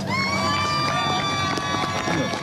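A spectator's long, high-pitched whoop of cheering for a graduate receiving his diploma, held for about a second and a half over a low crowd murmur.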